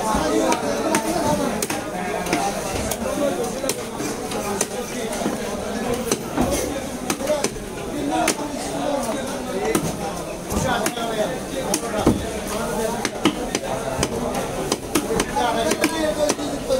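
Heavy cleaver chopping rohu fish on a wooden chopping block: repeated sharp knocks at uneven spacing, as the blade cuts through flesh and bone into the block.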